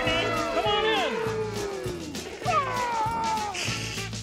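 Puppet animals' voiced calls, gliding up and down in pitch, in the first second and again midway, over the song's music backing with a steady repeating bass.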